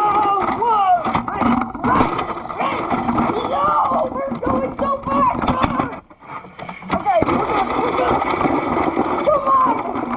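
Voices talking and calling out, too unclear to make out words, with knocks and rubbing from the plastic Playmobil toy helicopter as it is swung around by hand. The sound drops briefly a little past the middle.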